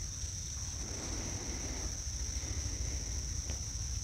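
Insects droning steadily in one high-pitched note, with a low rumble underneath.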